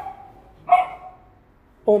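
A poodle gives one short, sharp bark about two-thirds of a second in.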